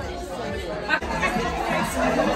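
Indistinct chatter of many people talking at once in a large room.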